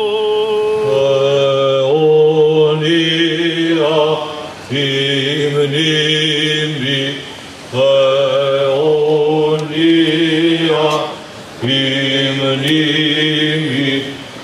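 Male voices singing Greek Orthodox Byzantine chant: a moving melody over a held low drone note (ison). It comes in four phrases split by short breaks, the chanted responses between the petitions of a litany.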